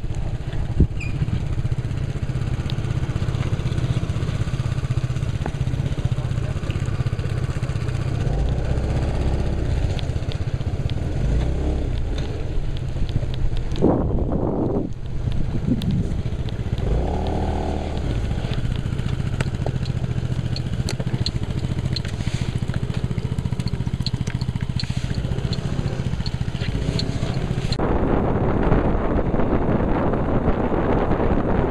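Scooter engine running steadily while riding on a wet road, with tyre and wind noise. About halfway through there are two brief pitched sounds, and near the end the sound turns denser and noisier.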